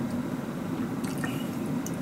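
Metal spoon scooping thick curry and rice in a bowl, soft wet squishing sounds and a few faint clicks, over a steady low hum.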